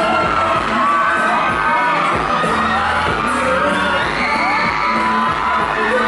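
A female singer singing a Thai pop song live into a microphone over a loud backing track, heard through the stage's loudspeakers.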